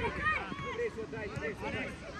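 Several children's voices shouting and calling over one another, high-pitched, with no clear words.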